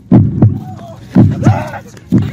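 Heartbeat sound effect: two deep double thumps (lub-dub) about a second apart, with a short laugh over it.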